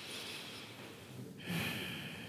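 A woman's soft breathing while lying at rest: two breaths, the second beginning about one and a half seconds in.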